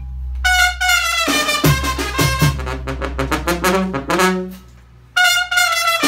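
Mexican banda brass band playing live: clarinets, trumpets, trombones and sousaphone over a tambora drum. Near the end the band drops out for a moment, then comes back in all together on loud held notes.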